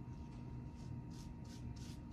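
Paintbrush strokes spreading a coat of wet brown glaze-mixed paint along a thin wooden strip: faint, soft swishes, a few in each second, getting clearer toward the end.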